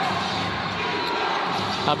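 Steady murmur of an arena crowd, with a basketball being dribbled on the hardwood court.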